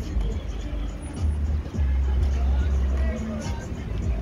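Street sound: a low rumble that comes and goes irregularly, with scattered voices talking and music playing in the background.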